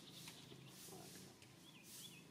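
Near silence: faint outdoor background with a high hiss pulsing about twice a second over a low steady hum, and a couple of brief high chirps near the end.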